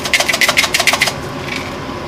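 A hand-held spice mill being twisted to grind nutmeg: a fast, even run of gritty clicks, about ten a second, that stops about a second in.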